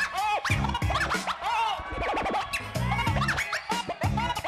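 Hip hop beat with DJ turntable scratching: quick rising and falling squeals from a record worked back and forth over repeated low drum hits.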